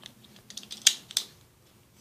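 Hard plastic toy parts clicking as a plastic acorn is fitted into place on a Scrat figure's nut-launching mechanism. A few light clicks, the two sharpest about a second in.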